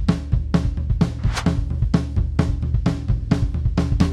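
Raw, unmixed recording of a live drum kit playing back: kick, snare, hi-hat and cymbals in a steady beat, hits about four times a second, over a low steady tone. Unprocessed, it sounds a bit weak.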